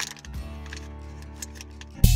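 Foil snack wrapper crinkling and crackling in the hands as it is folded up, a run of small irregular clicks over a steady low hum inside a car.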